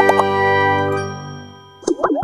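Bell-like chime of a logo jingle ringing out and fading away over about a second and a half, then a brief sharp swish just before the end.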